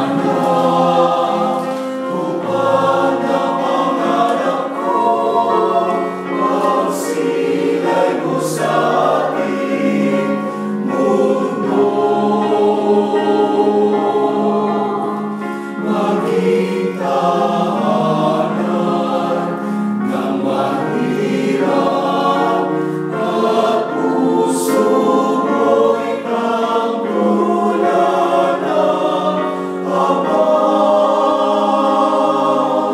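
Small mixed choir of men's and women's voices singing together in parts, holding long notes.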